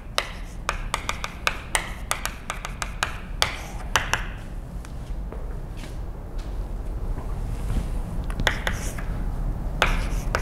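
Chalk writing on a blackboard: a quick run of sharp taps and short scratches for the first few seconds, a lull in the middle, then more taps near the end, over a low steady room hum.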